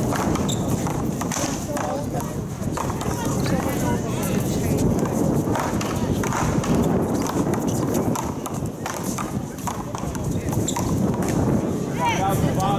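Paddleball rally: a Big Blue rubber ball struck back and forth with paddles and smacking off the wall, a string of sharp, irregular knocks, with sneakers scuffing on the court.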